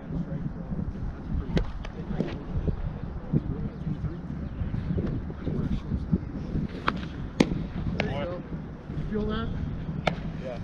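Sharp pops of pitched baseballs smacking into a catcher's mitt, the loudest about seven and a half seconds in, just after the pitcher's delivery, with a few lighter pops around it.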